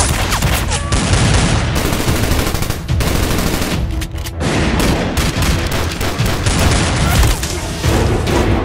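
Rapid gunfire from a film shootout: many shots in quick succession, with a couple of short lulls.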